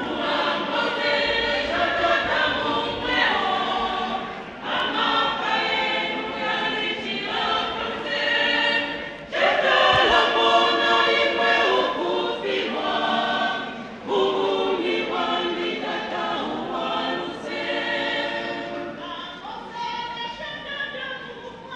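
A church choir singing in phrases, with short breaks between lines; it grows louder about halfway through.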